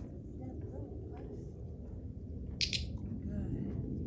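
Faint, quiet talk over a steady low background rumble, with one short hiss about two and a half seconds in.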